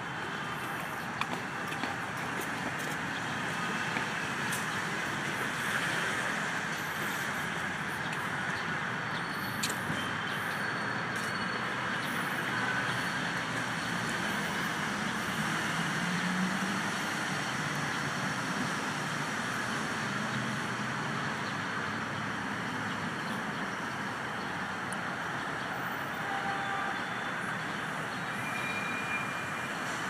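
Steady hum of city traffic in the background, with a few faint clicks.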